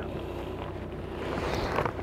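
A low steady hum with faint rustling noise and no distinct event.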